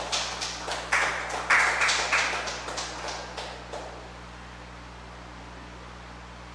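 A small group of mourners applauding with scattered hand claps, which die away about four seconds in.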